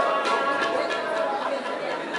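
Several voices chattering at once over music, with no clear words.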